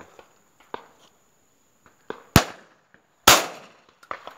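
Two shotgun shots about a second apart, sharp and loud, the second trailing off in a longer echo.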